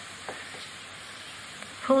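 Steady hiss of the recording's background noise, with a few faint ticks, during a pause in speech; a voice starts a word near the end.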